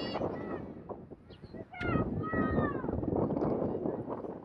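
High-pitched shouts and calls from a soccer field over a general murmur of crowd and field noise. One sharp rising-and-falling yell comes just before two seconds in, followed by a couple of falling calls.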